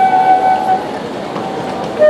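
A handheld wind instrument played into a microphone, with a slow stepwise melody. One long held note fades out just under a second in, and a quieter note follows near the end over street noise.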